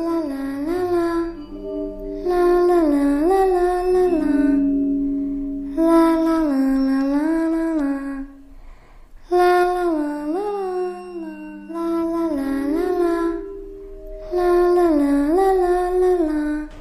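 A voice humming a slow tune in phrases of about two seconds, the notes sliding up and down, with short pauses between phrases and a fainter low note held underneath.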